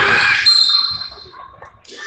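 Referee's whistle blown once, a single high steady tone lasting under a second, following a burst of shouting from players and spectators in the gym.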